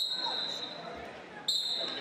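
Referee's whistle blown in two short, sharp blasts, one at the start and another about a second and a half in, signalling the start of the wrestling period. Faint voices echo in a large hall.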